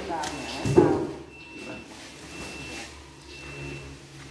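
Mostly speech: a short shouted call in the first second, then faint talk. Under it a faint, high, steady tone repeats in short dashes about once a second, and a low hum starts near the end.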